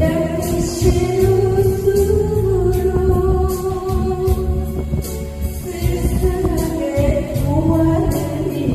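A woman singing a Korean trot song into a microphone over backing music, holding long notes with vibrato.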